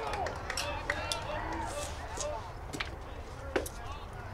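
Spectators talking among themselves, several indistinct voices overlapping, with one sharp knock near the end.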